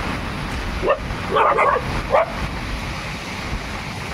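Steady heavy rain, with a dog giving a few short barks and yips between about one and two seconds in.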